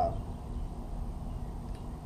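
A pause holding only a steady low background hum: room tone.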